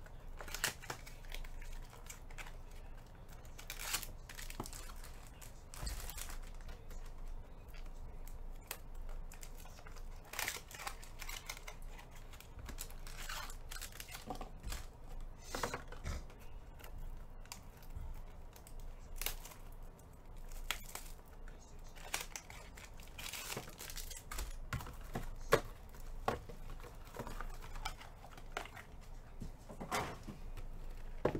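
Clear plastic wrapping from trading card packs being torn open and crinkled, with irregular crackles and light clicks as cards and packs are handled.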